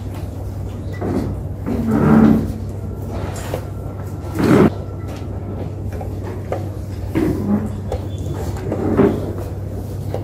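Chess pieces set down on a wooden board and the chess clock pressed during a rapid game: a few short knocks, the sharpest about halfway through, over a steady low hum.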